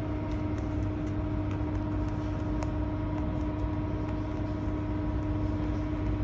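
Steady room hum with a few constant tones over a low rumble, and a few faint light ticks.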